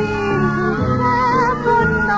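Early-1930s dance orchestra recording: the band plays a sustained melody over chordal and rhythm accompaniment, with the lead line wavering in a strong vibrato about a second in.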